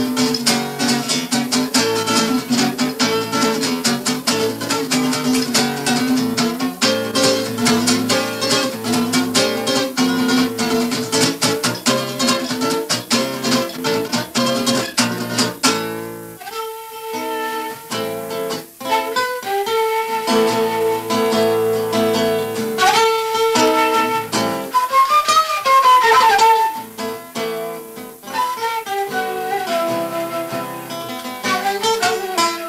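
Acoustic guitar and kaval, a Bulgarian end-blown flute, playing together. For roughly the first half the guitar plays fast, dense strumming. The music then opens out into long held notes, and near the end a loud melody line slides and bends in pitch.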